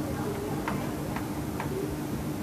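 Whiteboard eraser rubbing across a marker-written whiteboard, giving three short squeaks as it drags over the surface.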